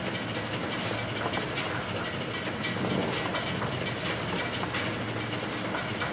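ZP-9B rotary tablet press running: a steady mechanical clatter with a low hum and scattered light clicks.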